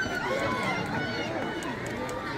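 Spectators in the stands talking, many overlapping voices mixing into an unintelligible crowd babble.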